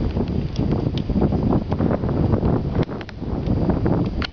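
Wind buffeting the microphone in a loud, low rumble, with scattered sharp clicks and knocks on top.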